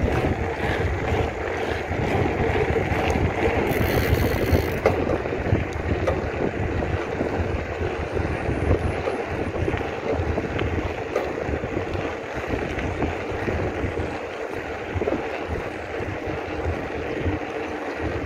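Wind buffeting the microphone and mountain-bike tyres rumbling over a rough gravel and tarmac road at speed, a steady noise.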